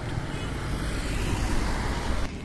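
Steady road traffic noise, an even rush with a deep rumble.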